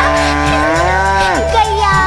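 A cow mooing once, one long call that falls away sharply near the end, over a children's song's instrumental backing with a steady bass beat.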